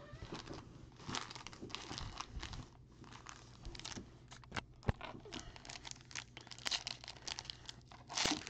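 Foil wrapper of a trading card pack crinkling and tearing as it is handled and torn open by hand, in irregular crackles with a sharp tick about five seconds in.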